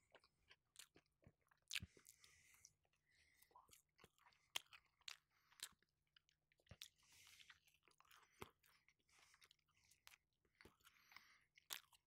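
A person chewing a mouthful of pita wrapped around gyro meat and Greek salad, close to the microphone: faint, irregular wet clicks and crunches.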